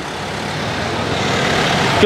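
A motor vehicle's engine running close by on the street, a steady sound that grows slowly louder.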